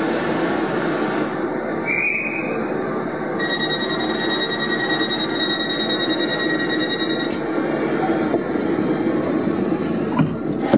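Class 455 electric multiple unit pulling away, heard from inside the carriage over its steady running noise. About three seconds in, the high-pitched whine of its new Vossloh AC traction pack starts, holds one pitch, and cuts off suddenly about seven seconds in. A brief rising tone comes about two seconds in.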